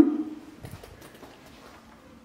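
A few faint footsteps on a wooden floor under quiet room tone.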